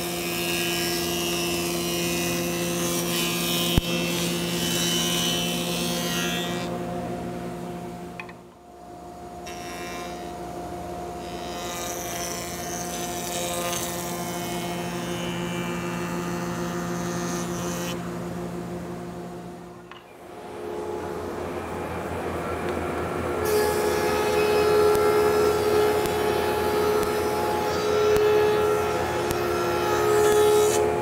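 Hammer A3 jointer-planer running as rough African mahogany boards are jointed on it: a steady motor hum, with a loud hiss from the cutterhead while a board passes over. After a short break about 20 seconds in, a thickness planer runs louder, planing boards fed through it.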